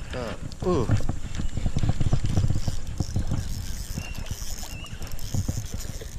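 Spinning reel being cranked while a hooked smallmouth bass is played: a steady run of quick clicks and knocks from the turning handle and rotor.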